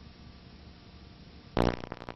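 Worn old-film soundtrack hiss and hum, then about one and a half seconds in a sudden loud, low pitched blare that quickly fades to a lingering low tone, with crackling clicks after it.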